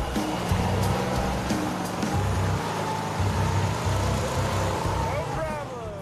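Truck engine running as it drives over a bumpy dirt track, a steady low rumble, with faint background music; a voice begins near the end.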